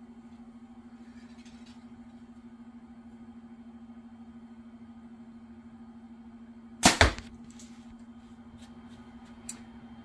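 Darton Prelude E32 compound bow firing a 420-grain arrow: a single loud, sharp double crack about seven seconds in, over a steady low hum.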